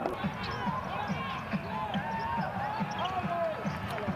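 Sound of a basketball game in play: arena crowd voices, sneakers squeaking on the hardwood court, and a ball being dribbled in a steady run of bounces.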